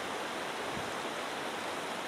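Shallow mountain stream running over rocks: a steady, even rush of flowing water.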